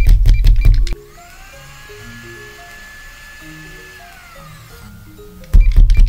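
Electric blender whirring: a whine that rises about a second in, holds steady, and winds down near the five-second mark, over soft background music. Paper handling knocks at the start and again near the end are louder than the whine.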